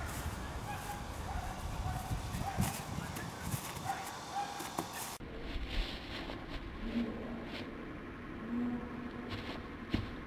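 Faint outdoor background noise, its character changing abruptly about five seconds in, with a few faint short sounds over it. Nothing distinct from the jump or landing stands out.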